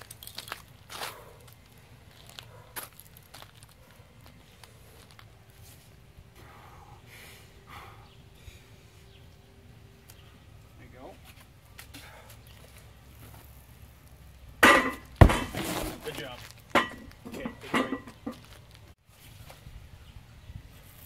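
Lifter straining at an atlas stone: quiet scuffs and small knocks, then a short burst of loud grunting about fifteen seconds in, with one heavy thud of the stone against the wooden platform.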